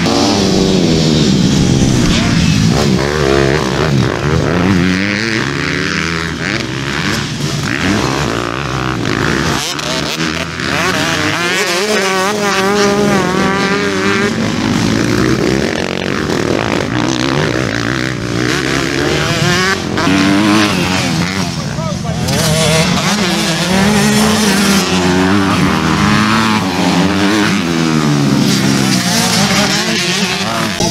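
Several motocross bike engines revving hard and easing off over and over as the bikes race past, their pitch rising and falling and overlapping.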